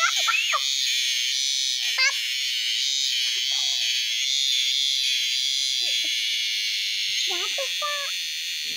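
A steady, high-pitched insect buzzing drone that never lets up. Short, squealing child vocal sounds come in at the start, briefly about two seconds in, and again near the end.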